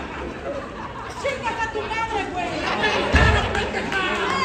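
Spectators' voices shouting and chattering in an arena hall, with a single low thump about three seconds in.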